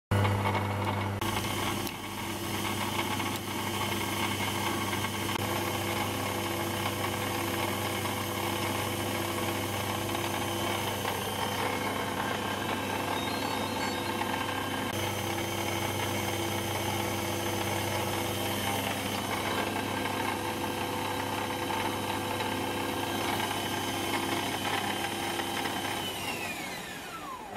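HBM 250x550 Profi Vario bench lathe running with its spindle at around 1,600 rpm: a steady motor and gear whine over a low hum.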